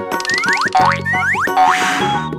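Springy cartoon sound effects that slide quickly upward in pitch, in quick pairs, over light children's background music.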